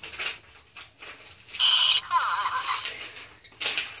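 Zhu Zhu Pets toy hamster playing its electronic sounds: high chirping, beeping squeaks from its little speaker, first a short steady block of beeps about a second and a half in, then a warbling run of rising and falling chirps.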